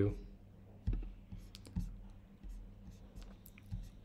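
Scattered soft clicks from working a computer's mouse and keys, about eight spread unevenly across the few seconds, over a faint low hum.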